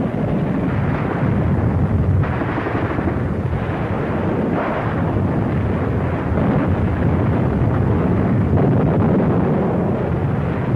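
Battle sounds on an old film soundtrack: a continuous rumble of explosions mixed with gunfire, swelling louder about two seconds in and again near the middle.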